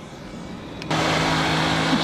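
A click about a second in, then the steady hum and rush of an idling work truck's engine and fan starts suddenly and runs on. Before it there is only a quiet, muffled low rumble.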